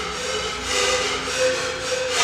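A large ensemble of sikus (Andean cane panpipes) playing together: held notes with a strong breathy rush of air that swells and fades in waves.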